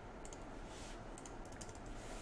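Faint computer keyboard and mouse clicks: a scatter of light taps, coming more quickly in the second half.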